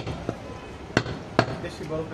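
A butcher's cleaver chopping goat meat on a wooden log chopping block. It lands in sharp single chops: one at the start, a faint one just after, then two more about a second in and just under half a second apart.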